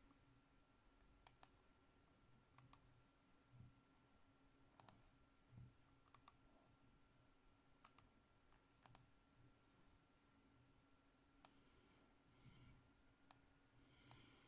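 Faint clicks of a computer's pointer button, about nine over the stretch, several in quick pairs, as pictures are picked and placed in a word-processor document. A faint steady hum sits underneath.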